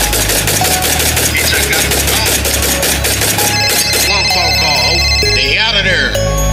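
Trap beat: a fast, even roll of hi-hat ticks over a deep bass line, with a voice coming in with sliding ad-lib sounds for the last couple of seconds.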